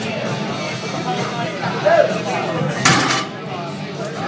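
A loaded deadlift barbell, 585 lb on iron plates, set down on the platform with one heavy metal clank of the plates nearly three seconds in.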